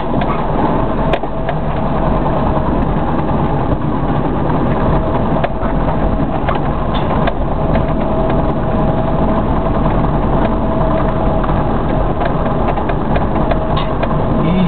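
Car engine running and road noise heard from inside the cabin while driving along a street, with occasional light knocks and rattles.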